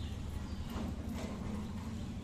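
Diesel tractor engine idling with a steady low, regular knock, with faint metallic rattling as a steel gate is pushed open.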